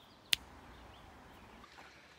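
A single sharp finger snap about a third of a second in, followed by faint outdoor background noise.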